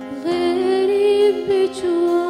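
A woman singing a long held, slightly wavering note into a microphone, accompanied by a steel-string acoustic guitar.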